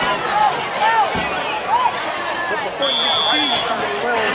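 Many overlapping voices of the crowd and sideline shouting during a running play. A referee's whistle blows once, a short steady high note about three seconds in, blowing the play dead after the tackle.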